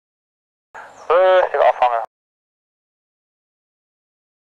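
A person's voice calls out once, briefly, about a second in, for just over a second.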